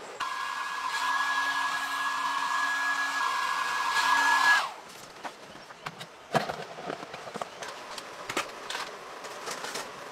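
A small electric fan motor whirring steadily with a high whine for about four and a half seconds, then cutting off abruptly; light clicks and rustles follow.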